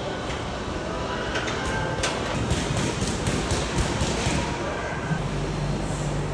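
Gym room noise: a steady din with a few faint clicks and knocks, and a low hum coming in about five seconds in.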